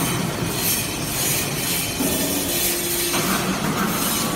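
TCM Baler vertical hydraulic briquetting press for cast-iron chips running: a steady mechanical noise over a low hum. The pitch of the hum steps up about halfway through and changes again about three seconds in.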